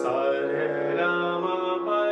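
A man singing a gliding Hindustani classical vocal phrase in Raag Bhairav, over sustained harmonium notes.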